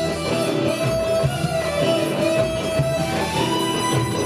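Live band music with strummed electric guitars over bass and a full backing. A long held lead note steps up to a higher held note about three seconds in.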